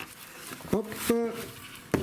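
Plastic bag and foam packing sheet rustling inside a cardboard box as an electronic unit is lifted out of its packaging, with a short sharp knock near the end.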